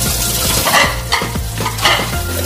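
Kitchen tap running into a stainless steel sink while dishes are rinsed and scrubbed under the stream, with a few clinks of crockery.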